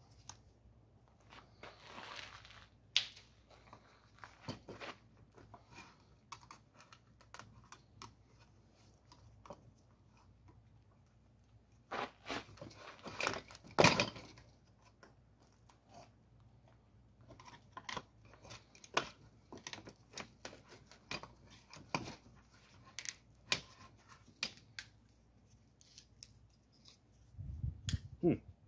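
Dried-out, crusty rubber seal being pried and torn out of a 1951 Chevrolet vent window's metal frame. Scattered scrapes, clicks and small metal clinks, with the loudest run of scraping about halfway through.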